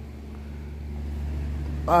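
A steady low hum with faint background noise, slowly growing a little louder; no distinct events.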